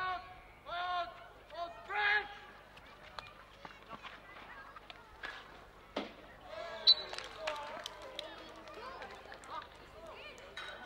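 Field hockey players shouting during a penalty corner on an artificial-turf pitch, with a sharp crack of a stick striking the ball about six seconds in, followed a moment later by a louder knock and more shouting.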